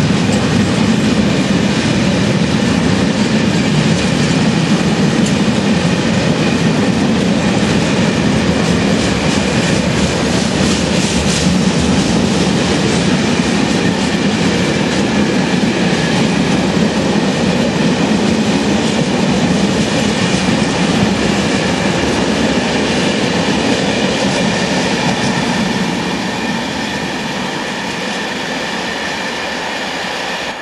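Aggregate hopper wagons of a freight train rolling past close by: a steady rumble of wheels on rail with faint high steady tones above it. It gets somewhat quieter about 26 seconds in.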